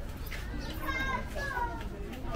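Voices of passers-by in a crowded lane, with one high-pitched, child-like voice calling out for about a second in the middle, over a low steady rumble of walking noise.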